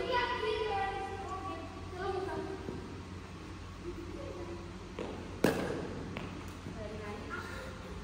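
People talking in the background, with one sharp, loud knock about five and a half seconds in that rings on briefly, and two fainter clicks just before and after it.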